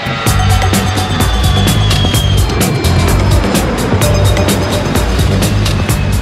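Background music with a quick, steady beat, over the jet noise of a Beriev Be-200 amphibian flying past; its turbofan whine falls in pitch over the first couple of seconds.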